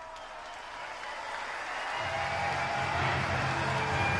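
Live concert audio fading in: crowd noise and cheering under held, droning intro tones, with a deep low tone joining about halfway in.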